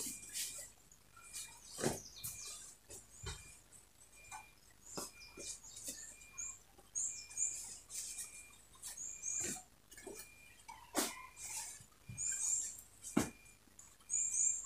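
Cotton print fabric being shaken out, turned and folded on a padded table: soft rustles and irregular light knocks and thumps from the handling. Faint high chirps repeat in the background.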